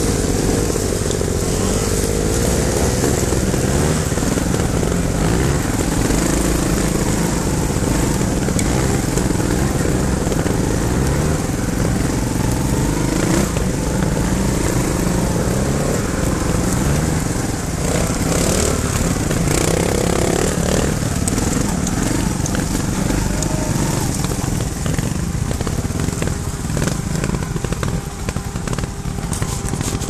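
Trials motorcycle engines running under load on a steep off-road climb, the revs rising and falling continuously as the riders work the throttle.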